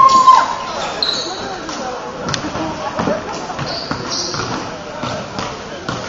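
Indoor gym sound: voices talking over brief high squeaks of sneakers on the hardwood court, with scattered sharp knocks of a basketball bouncing.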